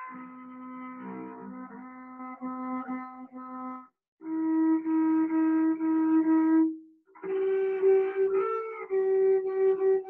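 Cello playing natural harmonics: sustained, pure, flute-like bowed tones in three long strokes with short breaks, the pitch stepping higher with each stroke as the player climbs the string's harmonic series.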